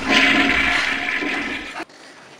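Toilet flushing: a rush of water that slowly fades, cut off abruptly near the end.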